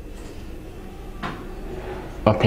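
Steady low room hum between phrases of speech, with one short noise about a second in.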